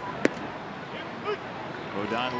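A 96 mph fastball smacking into the catcher's mitt: one sharp pop about a quarter second in, over the steady murmur of a ballpark crowd.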